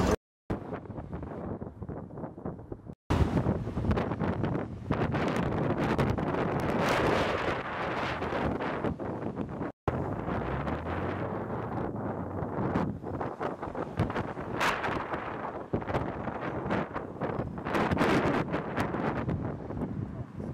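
City street traffic, cars driving past, with wind buffeting the microphone. The sound drops out briefly three times where the recording cuts between clips.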